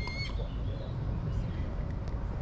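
Outdoor ambience: a steady low rumble with faint rustling, and one short high whistle-like chirp right at the start.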